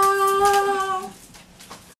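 A child's voice holding one long, steady sung note that stops about a second in.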